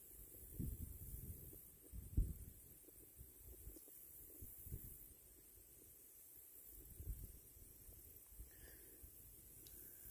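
Faint low thumps and rumble on the phone's microphone, scattered and irregular, the strongest a little after two seconds in.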